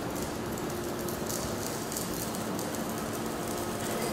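Steady background hiss with a faint low hum underneath and no distinct events.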